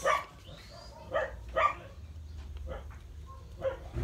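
A dog barking in the background: a few short, separate barks over a steady low hum.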